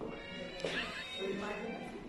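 Tango music playing, with people talking over it.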